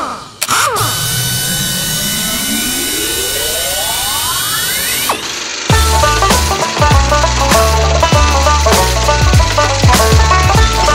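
A cartoon sound effect that rises steadily in pitch over about four seconds, over thin held high tones. A little past the middle it cuts off, and children's background music with a steady beat starts up.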